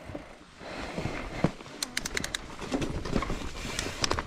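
Mountain bike rolling down a dirt singletrack: tyre, trail and frame noise that grows louder about a second in as it picks up speed, with a quick run of sharp clicks about two seconds in and scattered small knocks.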